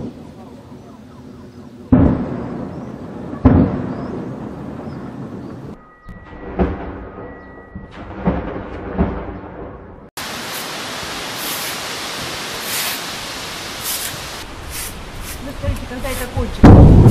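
Artillery shelling: several sudden heavy booms, each followed by a rolling rumble. Two loud ones come about two and three and a half seconds in, and quieter thumps follow; from about ten seconds in, a steady dense noise with brief crackles takes over.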